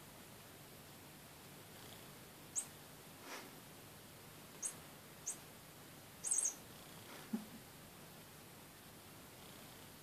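Domestic cat making a few brief, faint high chirping sounds and one short lower call while holding a wand toy in its mouth.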